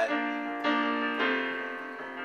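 Casio digital piano playing sustained chords in B flat: three chords struck about half a second apart, each ringing on and fading.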